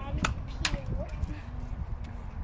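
Two sharp snaps about half a second apart: the stretched balloon of a homemade cup shooter snapping back as a cotton ball is fired, with a child's voice around them.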